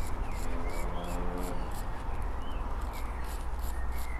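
Small hand wire brush scrubbing the threads of a spark plug in quick back-and-forth strokes, about four scratchy strokes a second. The strokes clean carbon fouling off the plug.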